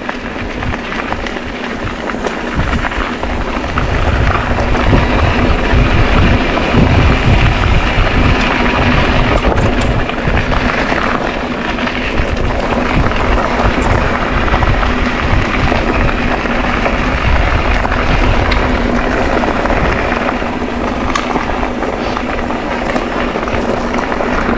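Wind buffeting a GoPro microphone together with mountain bike tyres rumbling over a dirt trail during a ride, a loud, uneven noise that grows louder over the first few seconds.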